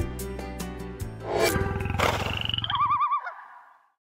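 Background music stops about a second in and a big cat roars, a rough, pulsing roar of about a second and a half. Near its end a short warbling electronic sting sounds and fades out.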